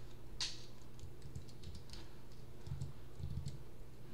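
Typing on a computer keyboard: scattered, irregular keystrokes over a steady low hum.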